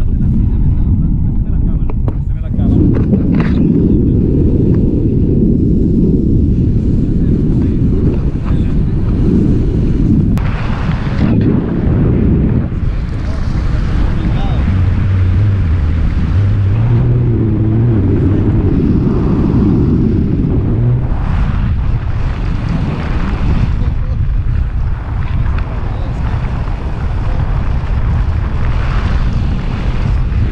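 Wind buffeting a pole-held action camera's microphone on a tandem paraglider as it launches and flies: a loud, rough low rumble that swells and eases.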